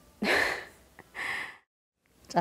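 A person's two short, breathy gasps about a second apart. The sound then cuts off suddenly to dead silence.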